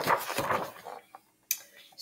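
Pages of a hardcover picture book being flipped by hand: a papery rustle for about a second, then a small tap and a brief rustle near the end.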